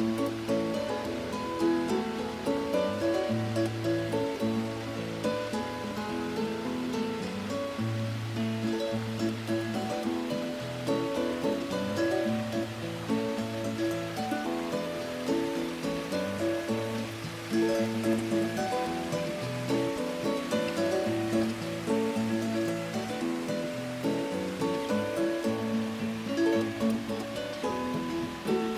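Acoustic guitar music: plucked melody notes over a repeating bass line.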